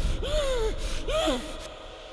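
A woman gasping twice, high strained breaths that each rise and fall in pitch, over a low rumble that fades away.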